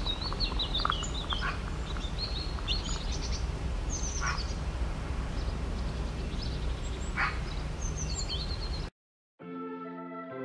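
Birds chirping and calling over a low steady outdoor rumble, with a few louder calls at about four and seven seconds in. Near the end the sound cuts off abruptly and music begins.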